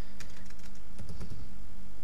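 Typing on a computer keyboard: a scattered run of separate key clicks, over a steady low hum.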